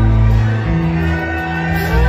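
A live rock band playing on stage, with electric guitars, keyboards, bass and drums, heard from the audience in a large hall.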